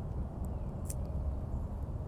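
Scissors snipping through a kale stem once, a short sharp click about a second in, over a steady low rumble.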